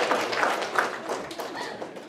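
Audience applause dying away, the claps thinning out and growing quieter.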